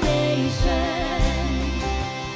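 Live worship band playing, with women singing a held melody with vibrato over electric guitar, bass and drums.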